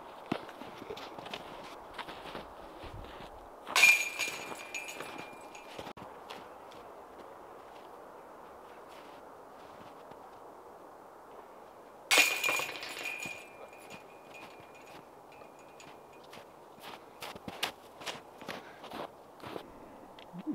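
Golf discs hitting a metal disc golf chain basket twice, about four seconds in and again about twelve seconds in, each a crash of chains followed by a metallic ring that fades over a second or two. Footsteps crunch in the snow near the end.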